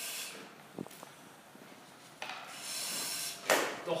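A hissing breath drawn through an SCBA facepiece regulator, starting about two seconds in and lasting about a second, ending in a sharp noise. Before it, soft rubbing and a click of gear being handled.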